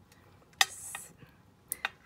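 Small handling sounds of hands knotting embroidery floss: a sharp click with a brief soft hiss a little after the start, then two quick clicks near the end.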